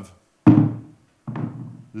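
A recorded example sound played over loudspeakers: a sudden struck impact with a ringing tone that dies away within about half a second, followed by a second, softer sound.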